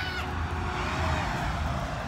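Wind rumbling on the microphone with a steady hiss of outdoor noise.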